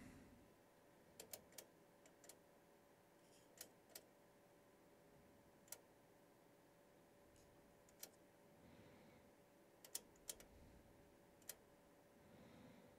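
Faint, irregular clicks, about a dozen of them and some in quick pairs, from the controls of bench test equipment being switched and turned while the scope is set up for a step-response check. A faint steady electronic hum runs underneath.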